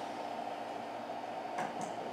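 Dry-erase marker writing on a whiteboard: two faint, short, high squeaks of the marker strokes near the end, over steady room hiss.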